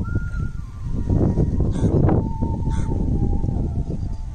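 Wind rumbling on the microphone, with two short bird calls about two and three seconds in and a thin, wavering tone in the background.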